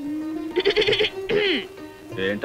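Soundtrack music with a held note, over which a person's voice gives a quick quavering burst and then a falling, drawn-out vocal sound.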